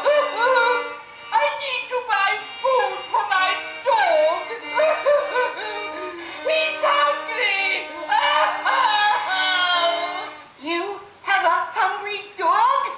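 A cartoon soundtrack song: voices singing over a held musical note and accompaniment, played through computer speakers and picked up in the room.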